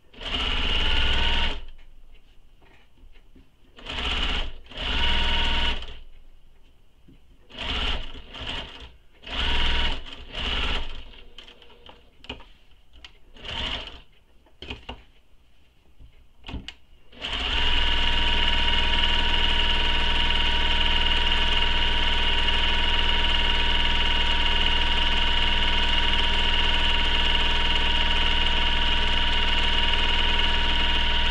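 Domestic sewing machine top-stitching along a folded fabric strap. It runs in a series of short stop-start bursts for the first seventeen seconds or so, then in one long steady run at speed.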